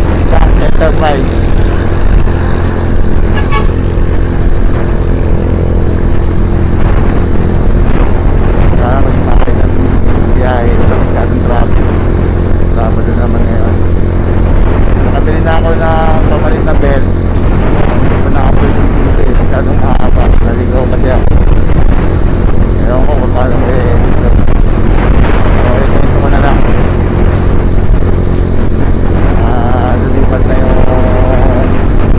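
A 125cc KYMCO Super 8 scooter engine running steadily at cruising speed, with wind and road noise on the action-camera microphone. Background music and a voice come in at times over the ride noise.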